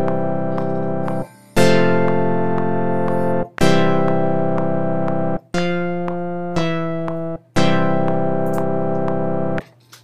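Software synthesizer in Logic Pro played from a USB MIDI keyboard: a slow run of about six chords, each struck and held for one to two seconds with short gaps between, as a MIDI performance is recorded.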